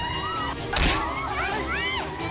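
A single sharp hit, like a punch sound effect, a little under a second in, over dramatic background music with sliding high tones.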